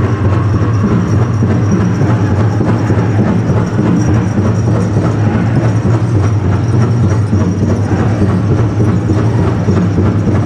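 Powwow drum group playing a fast fancy dance song live: a big drum struck in a quick, even beat, loud and steady throughout.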